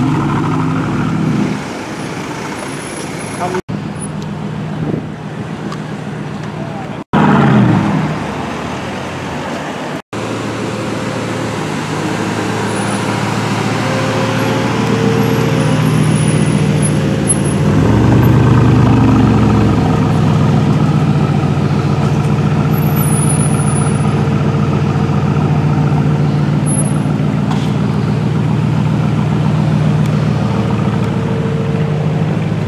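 Aston Martin DBX prototype's engine running at low speed, steady and low, with a brief rev just after seven seconds in and a louder stretch of acceleration around eighteen seconds, amid street traffic and voices. The sound drops out briefly three times in the first ten seconds.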